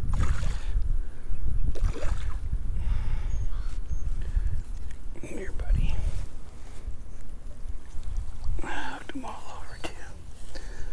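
A hooked bass splashing at the water's surface as it is reeled to the bank, over a steady rumble of wind on the microphone, with some low muttering later on.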